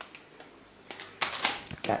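Rustling and bumping handling noise from a handheld camera being moved about, in a cluster of short bursts in the second half, with a spoken word right at the end.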